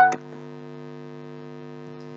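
Steady electrical hum on the recording, a low buzz made of several fixed tones holding an even level, with no other sound after a spoken word trails off at the very start.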